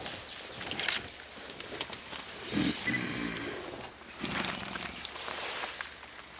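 Silverback mountain gorilla feeding on leafy stems, with crackling and rustling as it strips and chews the leaves. Two low grunts come through, one about two and a half seconds in and one just after four seconds.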